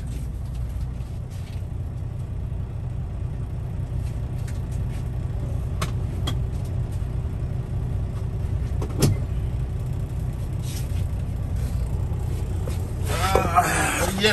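Kenworth T680 semi truck's diesel engine running steadily, heard from inside the cab, its low hum growing slightly louder as the truck gets under way. A few light clicks come and go, with one sharp click about nine seconds in.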